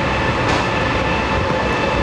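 EP20 electric locomotive hauling a passenger train into the station at low speed: a steady rumble with a high, even whine over it.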